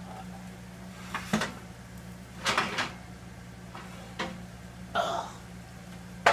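Oven door and metal oven rack clanking as a ceramic baking dish is pulled out of the oven: a few separate knocks, then a short clatter, then smaller scrapes and bumps.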